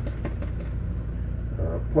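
Steady low hum with a few faint soft clicks in the first second; a man's voice comes in right at the end.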